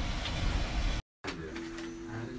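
Steady low rumble of a car's cabin while driving, cut off abruptly about a second in; after a brief dead silence, a quieter steady low hum.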